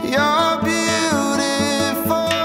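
Acoustic guitar strummed in a steady rhythm, about four strokes a second, with a voice singing over it that slides up into a held high note near the start.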